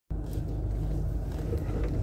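Jeep Wrangler driving slowly over a rough gravel track: a steady low engine and drivetrain rumble, with a few faint clicks of stones under the tyres.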